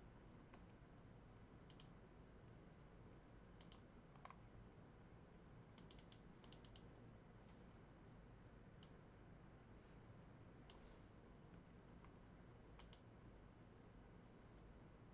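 Faint, scattered clicks of a computer mouse and keyboard over quiet room noise, with a quick run of several clicks about six seconds in.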